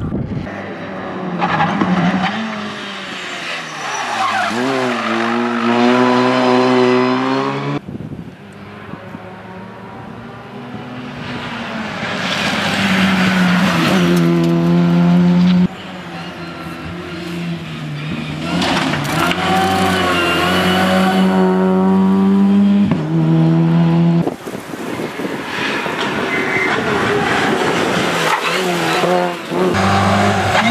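Opel Adam rally car's engine at full throttle on a tarmac stage, its note climbing and dropping again and again with gear changes and lifts as the car approaches and passes. The sound jumps abruptly three times between passes.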